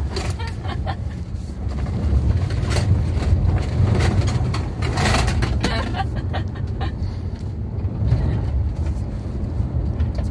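Volkswagen Amarok driven hard on a dirt track, heard from inside the cab: steady engine and road rumble, with scattered knocks from the rough surface.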